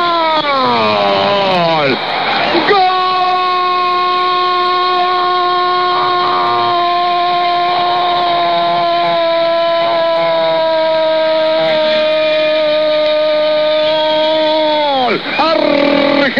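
A Spanish-language radio football commentator's long drawn-out goal cry. One held note falls away, there is a quick break for breath about two and a half seconds in, then a second note is held for about twelve seconds, sinking slowly and dropping off near the end. It is the call of a goal being scored.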